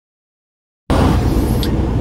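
Semi truck's diesel engine and road noise inside the cab while driving: a steady low rumble that cuts in suddenly about a second in, after silence.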